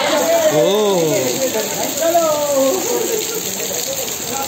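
Water splashing in a swimming pool as people wade and move through it, over a steady hiss. Voices call out twice over the water, the first with a rising-then-falling pitch about half a second in, the second around halfway through.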